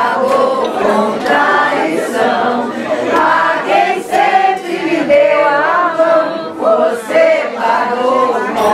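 A group of people singing together, women's and men's voices mixed.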